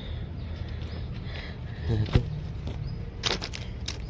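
Handling noise from a handheld camera being moved about under a parked car: a few sharp clicks and rustles over a steady low background, with a brief vocal sound about two seconds in.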